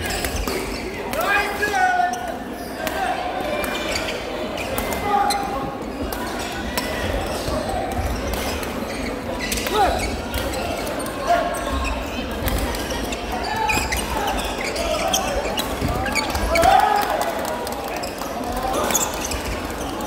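Men's doubles badminton rally in an indoor hall: repeated sharp racket strikes on the shuttlecock, with short squeaks scattered through it.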